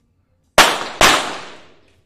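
Two .22 target pistol shots about half a second apart, each a sharp crack ringing on in the echoing indoor range.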